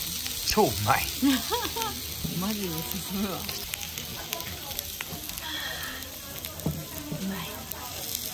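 Lamb and vegetables sizzling steadily on a jingisukan grill pan. Voices and a short laugh come over it in the first few seconds.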